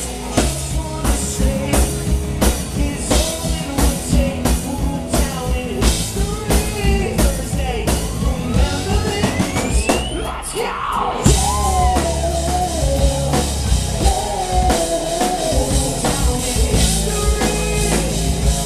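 Live rock band playing loud through a club sound system, with drum kit, bass and singing. A rising sweep climbs over a couple of seconds about halfway through, the music briefly thins out, then the full band comes back in with heavy bass.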